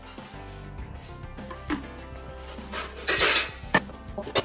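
Metal cookware clattering at the stove: a scraping rush about three seconds in, then a sharp clank, over background music.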